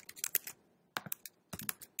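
Computer keyboard being typed on: a run of quick keystrokes, a pause of about half a second, then a few more scattered key clicks.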